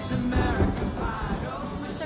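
Rock-and-roll song with a singer, played from a vinyl record on a turntable.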